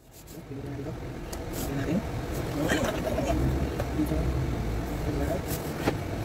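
Indistinct voices over a steady low rumble, with a few short clicks and rustles.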